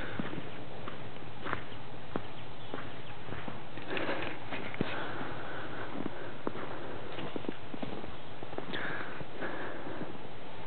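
Footsteps crunching irregularly on packed snow, louder crunch clusters about four and nine seconds in.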